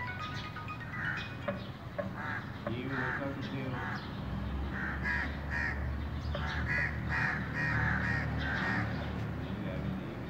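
Crows cawing over and over in short harsh calls, with a low steady hum coming in about four seconds in.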